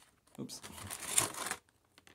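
Plastic cookie tray and wrapper crinkling for about a second as a chocolate chip cookie is pulled out of it.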